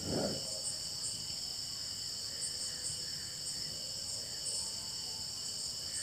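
Insects chirring steadily, a continuous high-pitched background drone.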